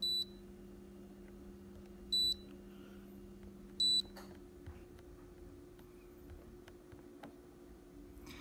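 Touch control panel of a Haier HB14FMAA fridge freezer beeping as its buttons are pressed: three short, high electronic beeps about two seconds apart in the first half, over a low steady hum.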